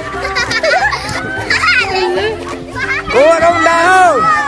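Children shouting and calling out excitedly, loudest near the end, over background music with steady held notes.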